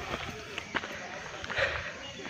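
Footsteps and breathing of a person climbing a steep mountain trail: scattered knocks of steps on the path, with a stronger rough patch about one and a half seconds in.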